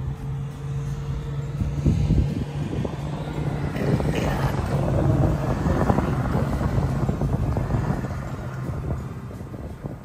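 Car running, heard from inside the cabin: a steady low hum with a rush of road and traffic noise that swells in the middle and eases off near the end.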